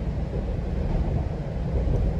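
Steady low rumble of a GO Transit passenger train running along the track at speed, heard from inside the coach.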